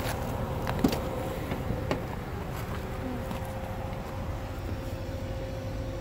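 2008 Hummer H2's 6.2-litre V8 idling: a steady low rumble with a faint constant whine over it, and a couple of light clicks about one and two seconds in.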